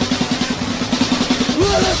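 Grindcore drums playing a fast, even roll on snare and kick, about ten hits a second. A long held pitched note comes in near the end.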